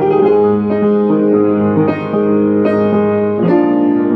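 Upright piano played slowly: chords struck about once a second, their notes ringing on over held low notes.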